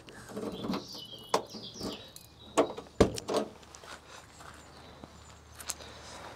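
The door of a 1981 Ford Fiesta Mk1 being opened: handle and latch clicking, with a sharp clack about three seconds in and a few lighter knocks around it.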